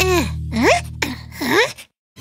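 Three short wordless cartoon vocal sounds, each sliding in pitch: the first falls, the second rises, the third dips and rises again. Background music runs underneath and stops shortly before the end.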